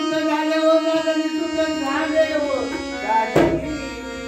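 Bhajan on harmonium and tabla: harmonium notes under a long held sung note that slides down and fades about two and a half seconds in, then a single tabla stroke just after three seconds.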